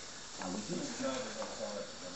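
Miniature schnauzer puppy hanging on to a rope toy as it is dragged across a wooden floor: a soft hissing rub of its body sliding on the boards, with a few short, faint low sounds.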